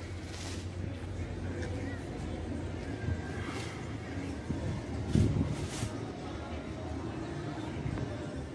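Quiet outdoor background: a low steady hum under faint noise, with a brief muffled bump and a couple of soft clicks about five seconds in.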